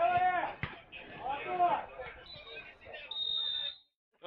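Men's voices calling out, fainter than close talk, twice in the first two seconds, then a thin, steady high-pitched tone for about a second and a half before it all cuts off.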